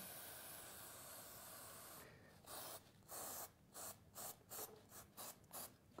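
Liqui Moly Sealant Remover aerosol can spraying onto a carbon-coated intake valve, faint: one steady spray for about two seconds, then a run of short bursts.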